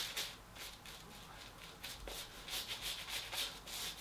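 Shaving brush working shaving cream into lather on a stubbled face: a run of quick, repeated bristly rubbing strokes.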